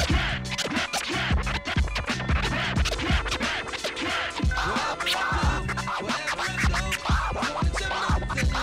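Turntable scratching: a vinyl record pushed back and forth by hand while a crossfader chops the sound into quick cuts, over a steady drum-and-bass backing beat.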